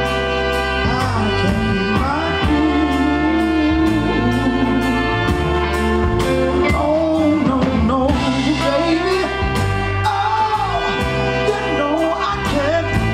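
Live soul band playing: drums keeping a steady beat, bass, keyboard and a saxophone-and-trumpet horn section holding chords, with a man's lead vocal over it.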